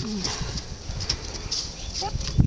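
A small puppy's paws pattering lightly and irregularly on wooden deck boards.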